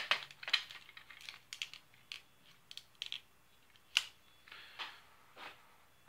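Hard plastic toy lightsaber parts being handled and pulled apart: a string of irregular small clicks and knocks, the loudest right at the start and about four seconds in.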